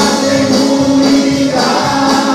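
Christian worship song played by a band, with a group of voices singing sustained notes. A bright percussion accent falls about every half second.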